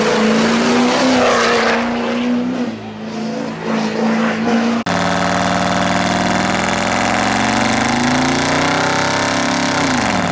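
Pickup truck burnouts: a truck engine held at high revs over the noise of spinning tyres, then, after a sudden cut, another pickup's engine climbing steadily in revs as its rear tyres spin and smoke, falling off again at the very end.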